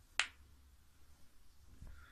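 A single sharp click a fraction of a second in, over faint room tone with a soft low thump near the end.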